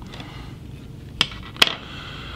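Two sharp clicks of small tools handled at a fly-tying bench, about half a second apart, the second louder with a brief ringing, over faint room hiss.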